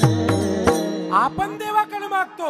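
Devotional kirtan music: drum strokes with small hand cymbals at a steady beat over a held drone, stopping abruptly less than a second in. A man's voice then comes in with sliding pitch.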